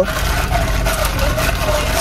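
Ice and drink swirling and rattling in a plastic cup as it is stirred with a wide straw, over the steady low rumble of a car engine idling.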